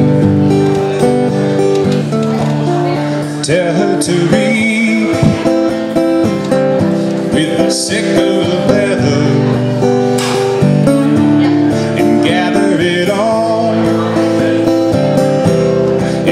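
Acoustic guitar playing sustained chords and picked notes of a folk-song arrangement, with a man's voice singing in two stretches, about four seconds in and again from about ten to thirteen seconds.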